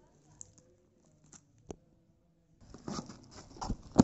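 A knife cutting open a cardboard parcel box, with crackling of the plastic bag around it. It is quiet for the first half apart from a couple of small clicks, then there is a run of scraping and crackling from about two and a half seconds in, ending in a sharp snap.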